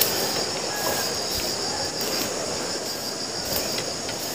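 Steady high-pitched insect chorus droning without a break, with a few faint ticks over it.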